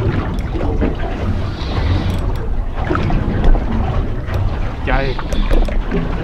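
Steady low rumble of wind and water around a small fishing boat drifting on open water, with wind buffeting the microphone.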